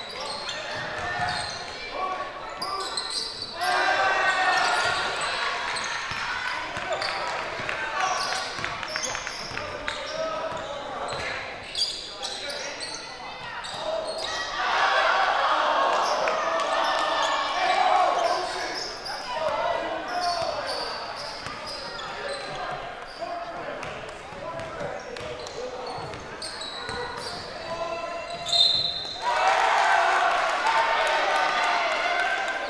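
Basketball bouncing on a hardwood gym floor amid calling voices from players and spectators, echoing in a large gymnasium.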